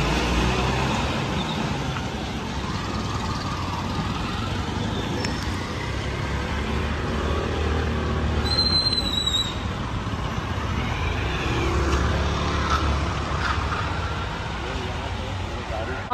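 Street traffic on a wet road: a steady low rumble of engines and tyres, with faint voices in the background. A brief high-pitched tone sounds about halfway through.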